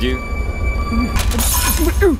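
Glass shattering in a short crash lasting under a second, starting a little past halfway, over a low steady film soundtrack.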